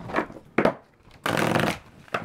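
Tarot cards being shuffled and handled by hand: a couple of short card swishes, then a half-second run of shuffling a little past the middle.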